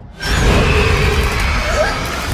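A sudden, loud, harsh shriek with a deep rumble under it, setting in about a quarter second in and held: a horror-film trailer's scream effect.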